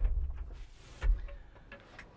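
Low thumps and light clicks of a person moving about in an excavator cab seat: one thump right at the start, a second about a second in.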